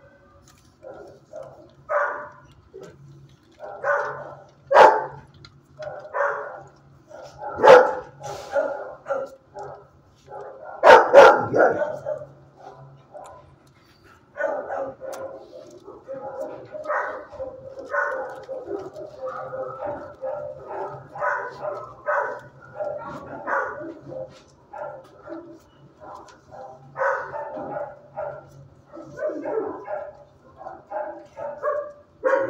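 Several dogs barking in an animal shelter's kennels: a few very loud, sharp barks in the first half, then from about halfway a busy, near-continuous chorus of barking and yelping from many dogs.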